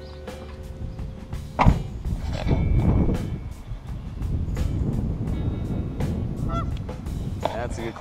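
Geese honking at the pond, with a steady low rumble of wind and movement on the microphone and a sharp knock about a second and a half in.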